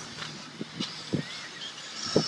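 Electric 1/10-scale RC buggies running on a dirt track: a steady high motor whine and tyre noise from several cars, with a few light knocks and a faint rising whine near the end.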